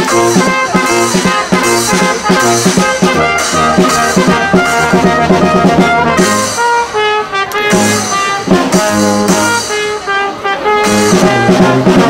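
A brass band of trumpets and trombones, with a large low-brass horn on the bass line, playing a Christmas carol.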